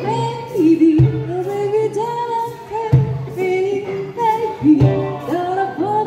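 Live pop song: a woman singing into a microphone over acoustic guitar, amplified through PA speakers, with a strong low note about once a second.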